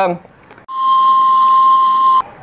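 Steam whistle of a kue putu vendor's steamer: one steady shrill whistle over a hiss, starting a little way in, lasting about a second and a half and cutting off sharply.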